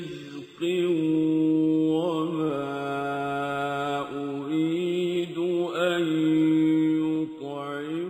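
A man's voice reciting the Quran in a slow melodic chant, holding long notes and bending the pitch in ornamented turns, with a brief break about half a second in.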